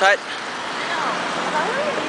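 Street traffic noise: a steady hum of road vehicles, with a low engine drone about halfway through.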